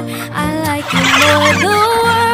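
A flock of domestic ducks calls in a short burst about a second in, heard over background music: a pop love song.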